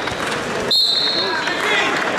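Spectators' voices calling out in a gymnasium during a wrestling bout. A steady, shrill high tone cuts in sharply about two-thirds of a second in and stops about half a second later.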